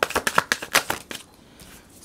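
A tarot deck being shuffled by hand: a rapid run of card clicks and flicks that stops a little over a second in.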